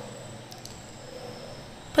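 Quiet pause: faint steady background hiss (room tone), with a couple of faint light clicks about half a second in.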